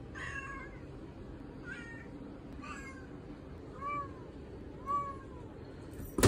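Domestic cat meowing five times, short calls about a second apart, the last two rising then falling in pitch.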